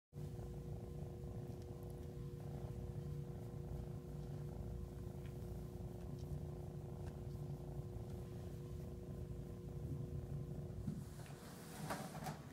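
A cat purring steadily and closely while being petted, with the purring stopping about eleven seconds in.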